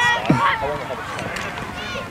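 Several people shouting and calling out across a youth American football field, with one sharp knock about a third of a second in.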